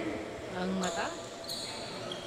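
Basketball game sounds on an indoor hardwood court: the ball bouncing and sneakers squeaking, with short high squeaks about a second in and a brief faint voice.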